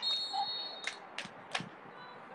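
Referee's whistle: one steady, high blast lasting just under a second, followed by three sharp impacts about a third of a second apart.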